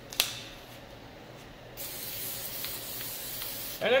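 Aerosol can of rubberized rocker-guard undercoating spraying, a steady hiss lasting about two seconds in the second half. A single sharp click comes just after the start.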